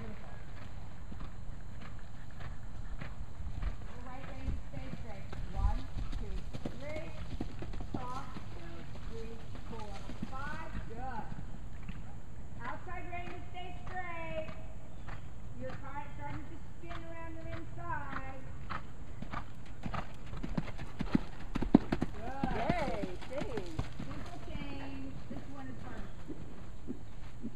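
Horse's hoofbeats on sand arena footing, with indistinct voices talking at times.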